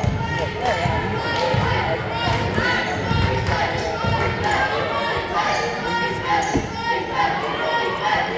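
Basketball being dribbled on a hardwood gym floor, a steady run of bounces echoing in the large gym, with voices talking in the background.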